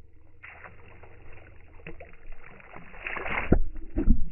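Lake water splashing and sloshing, growing louder, then two sharp splashes near the end as a skipped stone strikes the surface right beside the microphone and throws water at it.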